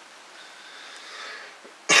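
A man coughing into his fist near the end, the cough starting suddenly after a quiet stretch.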